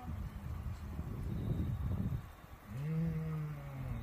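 Low rumbling noise, then about three seconds in a man's voice hums a long low 'mmm', falling slightly in pitch.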